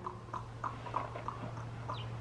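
A horse shifting its feet and tack as a rider settles into the saddle: faint light clicks, roughly three a second, over a low steady hum.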